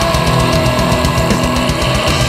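Pagan and folk melodic death metal, instrumental: distorted guitars held over rapid drumming, with no vocals.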